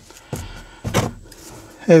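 Handling sounds on a work table as a small plastic plant pot is set down and pruning shears are picked up: brief rustles and a sharp knock about a second in.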